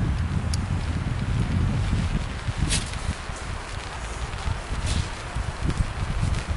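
Wind rumbling on the microphone with rustling, and three brief scratchy sounds about two seconds apart while a homemade alcohol penny stove is being lit.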